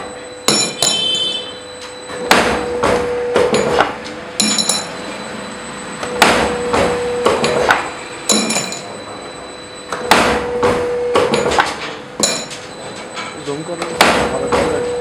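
Automatic scaffolding-pin forming machine cycling: its ram and bending die work the steel pin with sharp metal clanks in short clusters, roughly one every two seconds, over a steady hum.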